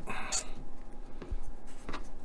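Small plastic parts scraping and clicking as a headlight reflector is pushed against a model truck's plastic front bumper, not yet snapping into place.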